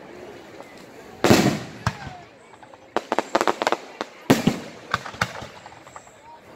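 Aerial fireworks going off: two loud booming bursts, about a second in and again about four seconds in, with volleys of sharp crackling reports between and after them.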